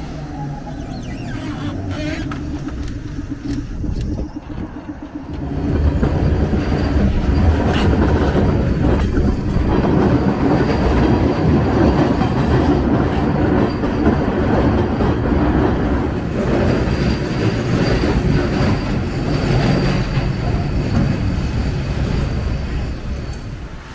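Perley Thomas streetcar running on the St. Charles line rails: a quieter stretch with a steady low hum, then from about five seconds in a louder, continuous rumble of the car in motion, heard from aboard.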